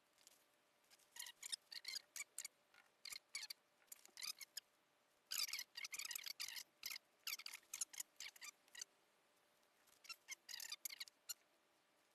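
Paintbrush stippling wet resin into chopped strand glass mat: irregular runs of short, crackly dabs with pauses between them.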